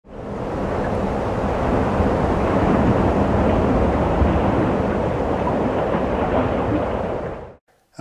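A steady rushing noise with a deep rumble, swelling in quickly at the start and cutting off suddenly shortly before the end.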